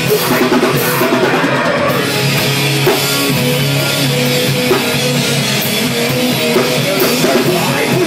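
Live metal band playing an instrumental passage: electric guitars over a drum kit, loud and unbroken.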